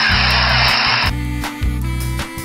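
A hissing whoosh transition sound effect lasting about a second, over background music with a steady repeating bass line; the whoosh stops about a second in and the music carries on.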